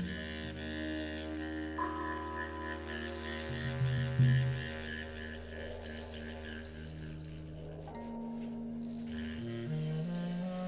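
Saxophone, electric bass and drums playing a slow, sustained droning passage of free-improvised jazz: long held low notes under quieter overlapping tones, with no clear beat. The lowest held note cuts off about eight seconds in.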